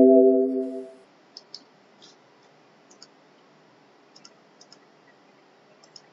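A chord of several steady tones fades out in the first second. Then come about a dozen soft computer-mouse clicks, some single and some in quick pairs.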